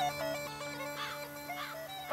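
Background music: a traditional pipe tune over two steady drones, fading down with a few last melody notes.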